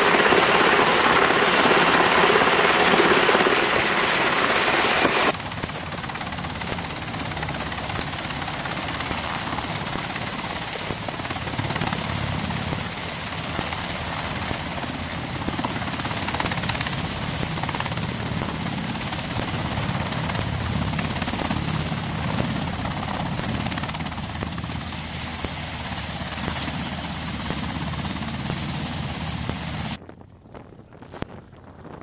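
MH-60S Seahawk helicopter running close by as it hovers over a ship's flight deck: rotor and turbine engine noise, louder and rougher for the first five seconds, then steadier after an abrupt change.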